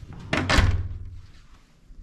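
Hotel room door swinging shut with a single loud thud about half a second in, fading away over the next second.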